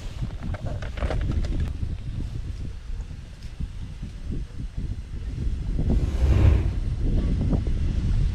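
Wind buffeting the microphone as a low, uneven rumble that swells about six seconds in, with small clicks and rustles from hands working close to the microphone.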